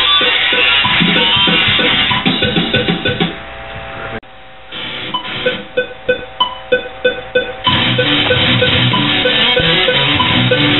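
Electric guitar playing a fast metal riff that breaks off about four seconds in, then a string of sharp separate stabs before the full riff comes back near the end.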